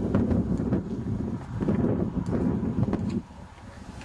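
Wind buffeting the camera microphone: a low, uneven rumble that drops away about three seconds in.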